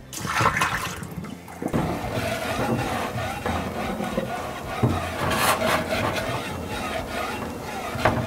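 Vinegar poured out of a glass vase into a stainless-steel sink, then a sponge rubbed around the inside of the wet glass vase, a steady wet scrubbing from about two seconds in.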